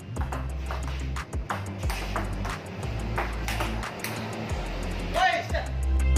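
Table-tennis ball clicking against paddles and the table in an irregular rally, heard over background music with a steady bass line. A voice calls out briefly near the end.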